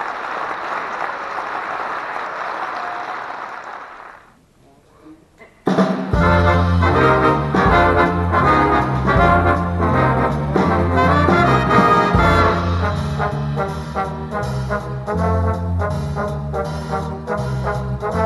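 Applause for the first four seconds, fading out. After a short lull, a school jazz big band starts playing about six seconds in, with saxophones, trombones, trumpets, drum kit and bass together.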